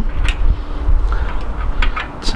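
A few small sharp clicks as a spoke key turns the spoke nipples of a bicycle wheel being trued, over a steady low rumble.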